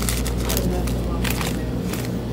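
Paper hot dog wrapper crinkling and rustling as it is pulled open by hand, in several short crackles over a steady low hum.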